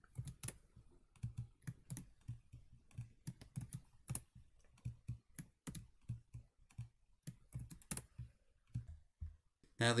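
Typing on a computer keyboard: a quick, irregular run of keystrokes as names and values are entered into spreadsheet cells.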